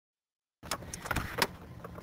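Silence, then from about half a second in a low background hiss with a few faint clicks and knocks.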